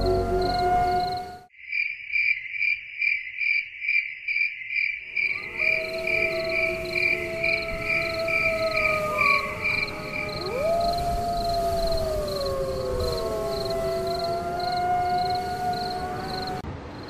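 Crickets chirping at night, an evenly pulsing high trill of about three chirps a second. From about five seconds in, drawn-out tones slowly rise and fall beneath it, eerie and wavering.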